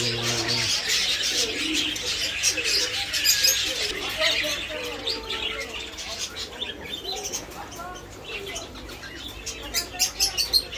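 Many caged birds chirping and twittering together, busiest in the first half.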